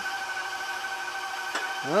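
KitchenAid stand mixer motor running at low speed, a steady hum of a few fixed tones, with a faint click about one and a half seconds in.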